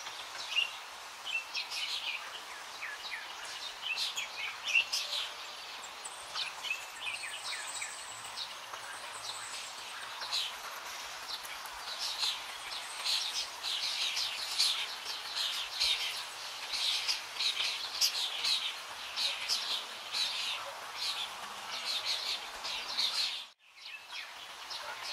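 Many small birds chirping in a continuous chorus of short, rapid calls over a steady background hiss. The sound cuts out for a moment near the end.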